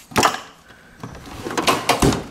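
Metal tool chest drawers: a drawer knocks shut just after the start, then another drawer slides open on its runners from about a second in, with loose tools clattering inside it.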